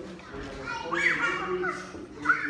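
Chatter of several people in a room, with a louder, high-pitched voice standing out from about a second in.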